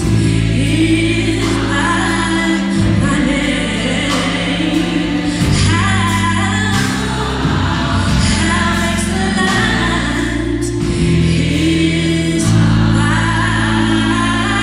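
Gospel choir singing in full harmony with a live band accompanying, over held bass notes that change every couple of seconds.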